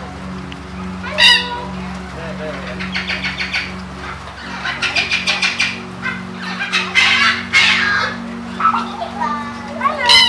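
Captive birds calling in an aviary: a loud call about a second in, quick runs of repeated chattering notes around three and five seconds in, harsher calls a little later, and another loud call at the end.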